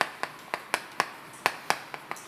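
Chalk tapping and clicking against a chalkboard as characters are written, about eight sharp taps at uneven spacing.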